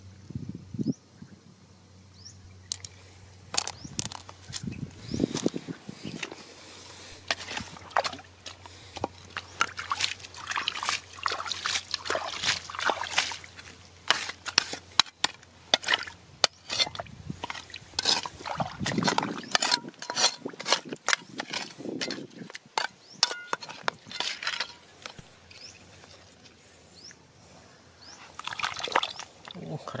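Hands and a metal trowel digging in wet mud and puddle water: many short scrapes, squelches and sloshes.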